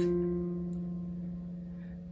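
A single low note plucked on an Epiphone guitar, the F on the fourth string's third fret, ringing and slowly fading away.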